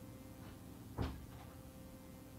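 A single knock about a second in, with a fainter one just after, over a faint steady hum.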